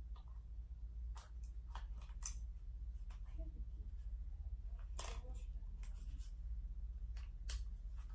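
A compact digital camera, a Canon PowerShot G7 X Mark II, being handled: a scattering of short sharp clicks and light handling noises as it is set up and switched on.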